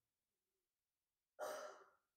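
Near silence, then about a second and a half in a single short, breathy sigh or breath from the preaching man.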